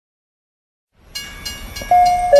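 Silence, then about a second in a train starts running on the rails: a low rumble with thin high squealing tones and regular clacks about three a second. Just before the end the first note of a station announcement chime sounds.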